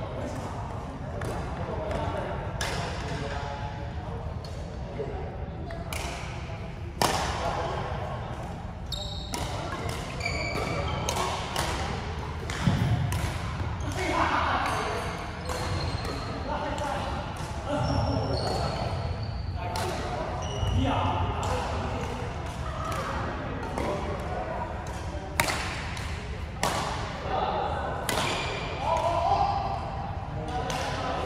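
Badminton rally: sharp cracks of rackets striking the shuttlecock, every second or two, with footsteps and short high squeaks of shoes on the wooden court floor, echoing in a large hall. Voices are heard in the background.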